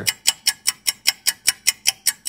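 Clock ticking fast and evenly, about five ticks a second.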